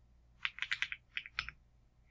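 Typing on a computer keyboard: a quick run of keystrokes starting about half a second in and lasting about a second, entering a word.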